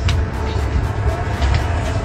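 Low rumble of a moving car, with faint music playing over it.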